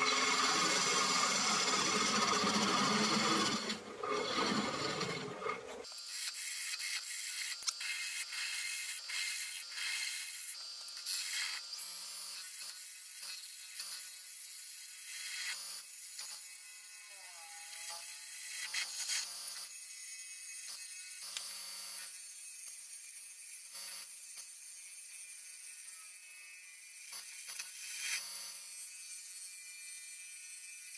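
A gouge cutting into a monkeypod bowl spinning on a wood lathe, a steady scraping hiss of the cut. It is full and loudest for the first six seconds, then turns thinner and higher, with the cut breaking off and resuming in short strokes.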